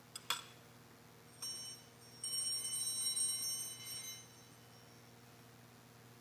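Small altar bells (sanctus bells) ringing: a brief ring about one and a half seconds in, then a louder ring lasting about two seconds. A sharp click comes just before.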